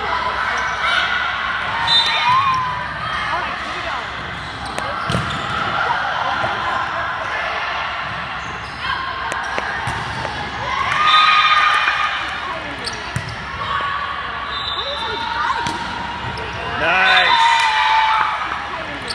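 Indoor volleyball game in a gym with an echoing hall sound: players and spectators calling and shouting throughout, with sharp thuds of the ball being hit. The shouting swells into louder bursts about eleven seconds in and again near the end as points are won.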